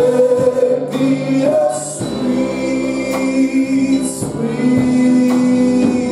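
Gospel choir singing a praise song with instrumental accompaniment. A bright high splash comes about every two seconds.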